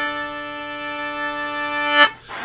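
Concertina holding one steady reedy note for about two seconds, breaking off at the end.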